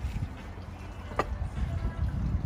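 Low wind rumble on the microphone, with one short sharp click a little past halfway as a ceramic cheese bowl is set down on the table.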